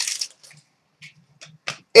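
A few faint, short clicks and rustles from hands handling a trading card and its plastic wrapper. The last one, near the end, is the sharpest.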